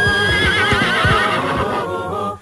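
A horse whinnies: one long, wavering call that starts high and falls in pitch over about a second.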